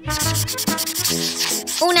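Scratchy swish sound effect for a video transition, fading out after about a second and a half, over background music.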